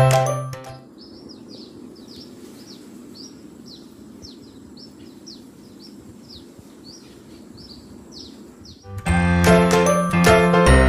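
Outdoor ambience: a bird repeating short, high, falling chirps, about two or three a second, over a low steady background hum. Background music fades out in the first second and comes back near the end.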